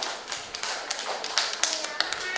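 Young children clapping their hands: a scattered, uneven round of claps.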